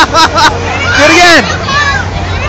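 Bursts of laughter, then a drawn-out rising-and-falling shout about a second in, over a fairground crowd's babble and a low steady hum.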